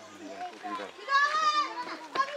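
Voices calling to each other in Nepali. A high-pitched voice calls out loudly about a second in.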